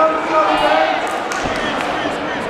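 A man's voice echoing through a large hall, with a few sharp knocks or thuds in the second half.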